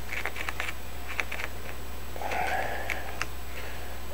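Faint light clicks and taps from a plastic jug and a small plastic measuring cup being handled as clear epoxy resin is poured slowly, over a steady low hum. A soft hiss comes a little past halfway.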